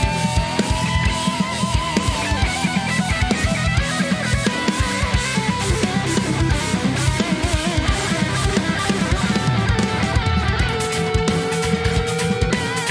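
Progressive metal mix playing back: a distorted electric lead guitar holds long notes with wide vibrato over heavy rhythm guitars and a busy drum kit. A new sustained lead note enters lower near the end.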